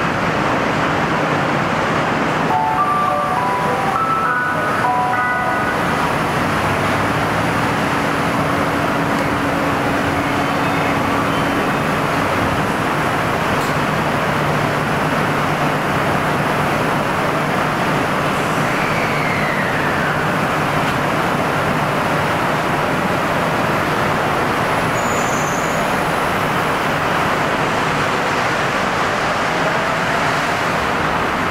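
Steady vehicle and traffic-type noise, with a short run of chime notes about three seconds in.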